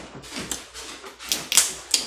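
Dungeness crab shell being cracked and picked apart by hand close to the microphone: a few sharp, irregular cracks and clicks.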